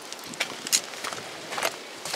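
Footsteps on dry dirt and gravel ground: three short scuffs.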